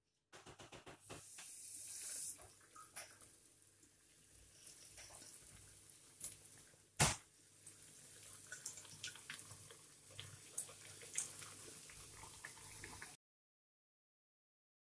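Breaded pork loin fillets frying in hot olive oil in a frying pan: a loud sizzle about a second in as a fillet goes into the oil, then steady sizzling with scattered crackles and pops, one sharp pop about halfway. The sound cuts off suddenly near the end.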